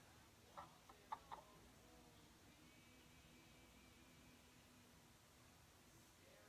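Near silence: room tone, with a few brief faint clicks about a second in.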